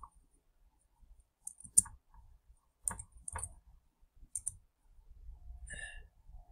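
About six separate clicks from computer mouse and keyboard use, spaced irregularly a second or so apart.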